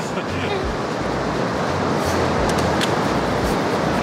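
Steady surf and wind noise on an open beach, with wind rumbling on the microphone off and on and a few faint clicks.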